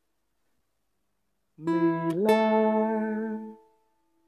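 After a silent pause, a guitar is plucked about a second and a half in. The note slides up in pitch and is struck again, then rings and fades away.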